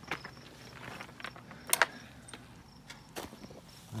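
Footsteps and scattered sharp clicks as someone walks across a yard, the loudest a single sharp click a little under two seconds in. Under them, a high-pitched chirping repeats in short, even pulses throughout.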